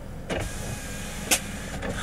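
A car's electric window motor running for about a second with a faint whine, stopping with a sharp click. A steady low hum from the car runs underneath.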